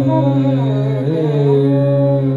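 Carnatic alapana in raga Simhendramadhyamam: a male voice with violin accompaniment tracing slow, gliding, ornamented phrases over a steady drone, without percussion.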